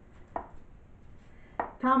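A measuring cup knocked against a baking dish to shake out graham cracker crumbs: two short, sharp knocks a little over a second apart.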